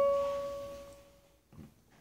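A single plucked acoustic guitar note, high on the second string, ringing out and fading away over about a second and a half.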